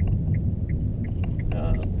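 Road and tyre rumble inside the cabin of a 2013 Nissan Leaf electric car, steady and low with no engine note, while a light turn-signal ticking runs about three ticks a second as the car turns at a junction.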